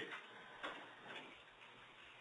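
Quiet room tone with a couple of faint, soft clicks.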